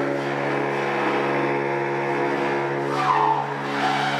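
Free-improvised music: a held low drone with a ladder of overtones, with curving high whines about three seconds in, from a cymbal tilted against a frame drum and worked with a stick.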